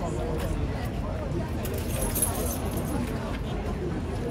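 Murmur of voices over a low traffic rumble, with a brief metallic jingle about halfway through from the horse's bridle chains and bit as it moves its head.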